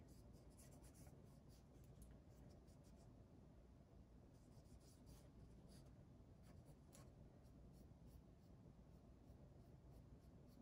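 Faint scratching and dabbing of a cotton swab wet with teriyaki sauce on paper, a few light taps scattered through, over near-silent room tone.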